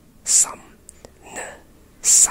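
A voice whispering English speech sounds from an RP phoneme chart: two short whispered utterances about a second apart, the first opening with a sharp hiss.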